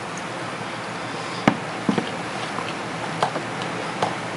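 A person chewing a mouthful of freeze-dried granola cereal softened in cold water, with small mouth clicks and one sharp click about a third of the way in, over a steady hiss.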